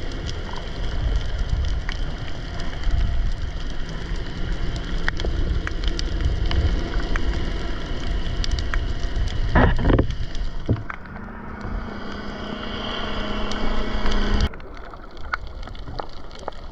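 Underwater noise through a GoPro housing: water moving against the camera as a low rushing rumble, scattered with fine crackling clicks. A louder swish comes about ten seconds in, then a steady low hum. The sound cuts off abruptly about a second and a half before the end.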